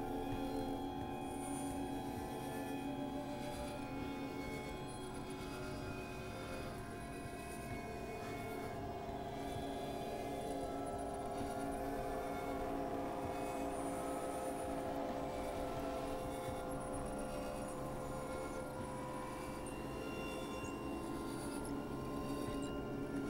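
Experimental electronic drone music: many sustained synthesizer tones held together over a noisy low rumble, slowly shifting, with no beat.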